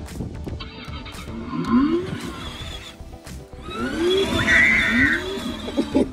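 Electronic sounds from a child's battery-powered ride-on toy motorcycle switched on with its button: music and short upward-swooping rev effects from its speaker, three swoops in all, as it sets off.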